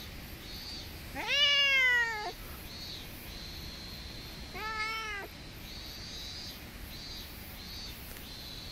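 A domestic cat meowing twice: a long meow that rises and then falls about a second in, and a shorter one about halfway through.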